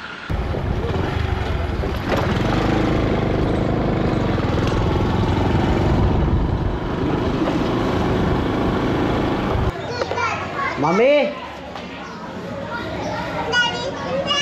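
Loud wind and road rumble on the microphone of a moving vehicle, cutting off suddenly about ten seconds in. Then people's voices, among them a high child's call that rises and falls.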